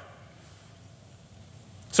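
Faint steady room hiss in a pause between spoken sentences, with a man's voice starting again right at the end.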